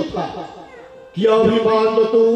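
A man's voice through a microphone: speech trails off, and about a second in he begins singing a long held note of a devotional chant.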